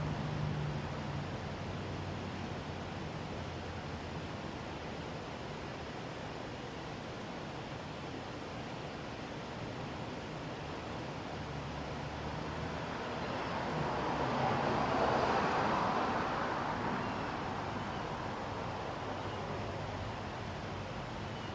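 Steady outdoor background hiss with passing road traffic. A vehicle's low engine hum fades away in the first second. A second vehicle's sound swells and then fades from about 13 to 17 seconds in, the loudest moment.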